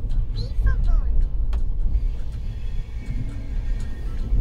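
Steady low rumble of a passenger train running on the track, heard from aboard a moving coach, with a few faint high chirps in the first second.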